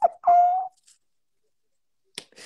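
Laughter ending in one held high note for about half a second, then the sound cuts out completely for more than a second.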